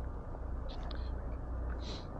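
Steady low rumble of wind and street noise while riding an e-bike through city traffic, with two faint short hisses, one about a second in and one near the end.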